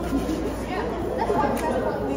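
Indistinct background chatter of several people talking at once, steady throughout.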